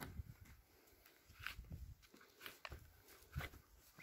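Faint, scattered scrapes and soft knocks of a spade cutting into and lifting garden soil, a few separate strokes over a few seconds.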